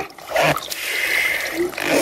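Pond water being drawn up with a small hand pump and splashing into a plastic bucket: a short gush about half a second in, then a steady hissing slosh for about a second.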